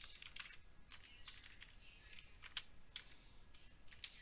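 Typing on a computer keyboard: a run of faint, irregular key clicks, one louder about two and a half seconds in.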